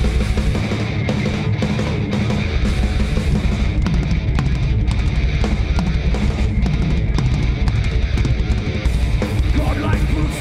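Progressive metal band playing live at full volume: distorted electric guitar over fast, driving drums and crashing cymbals.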